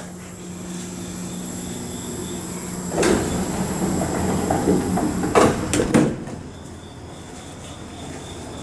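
Otis traction elevator's sliding doors closing: a steady low hum, a click about three seconds in, then two knocks close together about five and a half and six seconds in as the doors shut.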